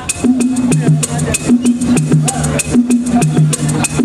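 Live funk band starting a song: a repeating two-note bass line under crisp percussion strokes, about four a second, on a steady groove.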